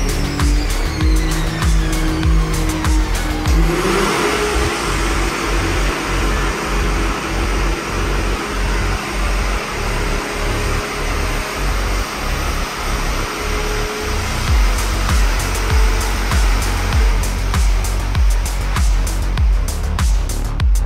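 Engine of a high-horsepower powersports vehicle on a chassis dyno, rising in pitch about four seconds in and then held under heavy load for roughly ten seconds. Electronic music with a steady beat plays throughout.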